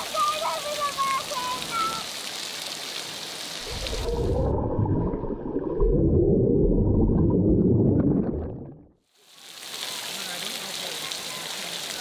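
Outdoor swimming pool with water splashing and a few voices, then about four seconds in the sound turns muffled and rushing with bubbles as the recording goes underwater. It cuts out briefly just before the ninth second and the splashing pool sound returns.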